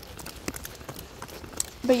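Horses' hooves clopping on a paved road: scattered sharp hoof strikes over a low background, with a voice starting near the end.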